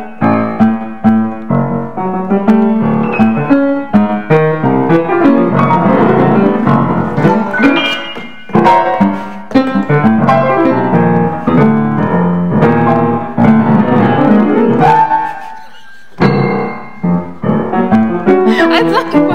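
Steinway grand piano played four-hands in a free improvisation: low bass-register notes under busy, shifting figures higher up the keyboard. About two seconds before the end the playing stops briefly and the notes ring down, then it starts up again.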